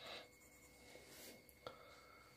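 Faint scratching of a marker pen writing on paper in a few short strokes, with a small tick of the pen about one and a half seconds in.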